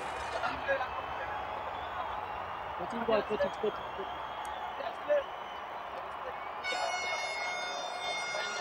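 Crowd of spectators murmuring, with a few faint distant voices and shouts. Near the end a steady high tone sounds for about two seconds.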